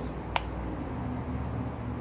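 Steady low background rumble and hum, with a single sharp click about a third of a second in.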